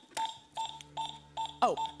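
Electronic Catchphrase game's timer beeping: a regular run of short high beeps, about two and a half a second, counting down the round. A faint steady low drone sits under the beeps from about half a second in.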